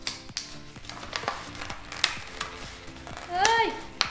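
Soft background music under light clicks and taps of plastic pens and paper being handled on a table, with a brief voiced exclamation near the end.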